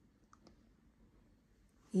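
Near silence with a few faint, short clicks about half a second in; a woman's voice starts right at the end.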